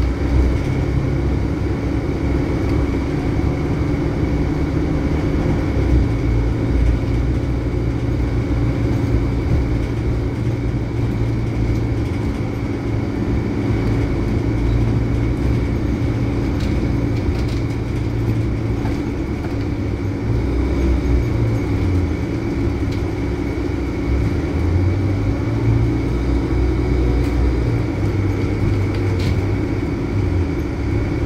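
Cabin ride noise of a Volvo B12BLE bus under way: the rear-mounted diesel engine drones low, its note shifting a few times as the bus changes speed, over road noise. A steady hum from the noisy air-conditioning runs underneath.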